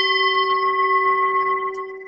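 Singing bowl struck once, ringing with a low fundamental and several higher overtones, fading after about a second and a half.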